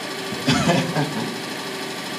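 A steady machine-like hum, with a brief voice sound about half a second in.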